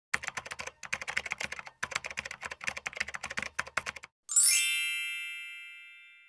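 Intro sound effects: rapid keyboard-typing clicks in short runs for about four seconds, then a bright rising shimmer into a ringing chime that slowly fades away.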